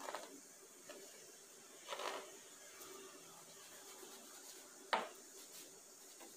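Faint scraping of a fingertip tracing through a thin layer of cornmeal in a plastic tray, with a soft rustle about two seconds in and a single sharp knock near the end as the tray is lifted and shaken to smooth the meal.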